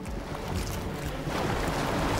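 Steady rushing water noise, swelling slightly about halfway through.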